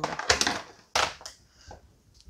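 Crackling, clicking handling noise at the kitchen counter, then one short sharp knock about a second in, followed by quieter fumbling.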